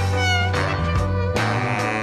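Jazz music: a saxophone plays short phrases of bending, sliding notes over a sustained bass line.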